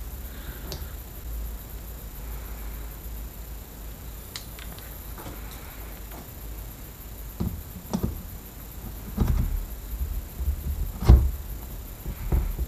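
Gearbox shafts and gears being handled and fitted into an open aluminium quad-bike engine crankcase, with a few scattered metallic knocks and clinks in the second half, the loudest about a second before the end. A steady low hum runs underneath.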